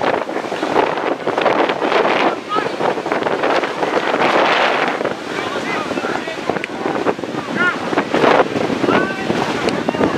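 Wind buffeting the camera microphone with a steady rushing noise, mixed with rugby players and spectators calling and shouting.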